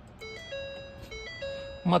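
A short electronic startup melody from the pickup's dashboard electronics as they power on: several held beeping notes stepping up and down in pitch.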